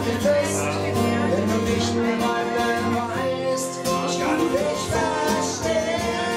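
Live acoustic band music: strummed acoustic guitars with voices singing.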